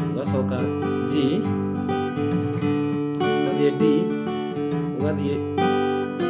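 Acoustic guitar playing a mugithi tune: chords strummed again and again, the notes ringing on between strums.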